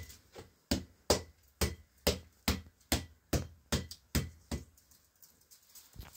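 A small ball tossed up and caught in the hand over and over, each catch a sharp smack, about two to three a second; the smacks grow weak after about four and a half seconds.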